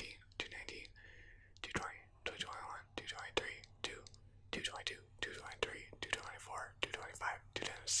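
A man whispering numbers in a steady count, one number after another.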